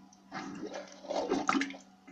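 Rubber toilet plunger worked in toilet-bowl water, sloshing and squelching with two strokes, the second louder.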